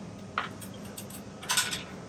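A few faint clicks and rustles from handling the tool while the hedge trimmer is not running: one short click about half a second in and a brief cluster around a second and a half in.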